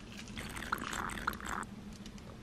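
Iced matcha latte sipped through a plastic straw: wet, gurgling slurps for about a second and a half.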